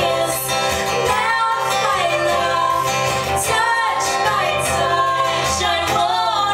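A woman singing a song over acoustic guitar, the vocal carrying long sung notes that glide in pitch.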